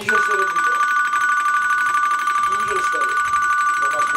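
An electronic ringer trilling on two high tones, one ring lasting about four seconds, with low voices talking faintly underneath.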